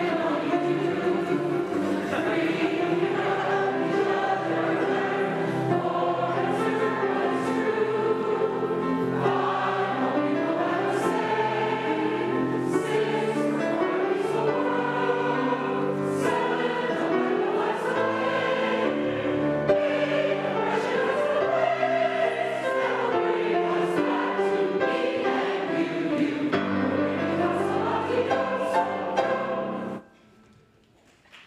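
A congregation singing together, the melody climbing and falling in stepwise scale runs, and the singing stops at the very end.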